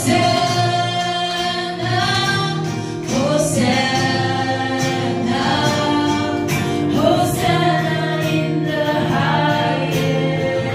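Several women singing a worship song together into microphones, with acoustic guitar accompaniment.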